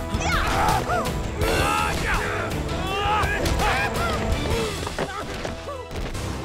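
Fight-scene sound effects: blows and kicks landing with impact crashes over loud action music, mixed with grunts and shouts from the fighters.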